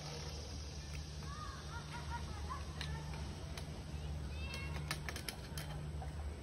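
Faint bird chirps in woodland over a low hum, with a few light clicks in the second half.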